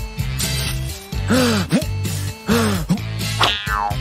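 Cartoon background music with a steady bass line, with three short wordless vocal sounds about a second apart and a falling pitch slide near the end.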